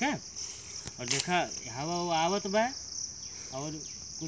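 A steady, high-pitched chorus of insects chirring without a break.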